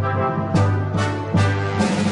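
Brass-led orchestral cartoon underscore: sustained low notes with accented chords struck every half second or so.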